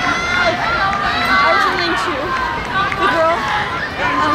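Track-meet spectators shouting and cheering for the runners, several raised voices overlapping.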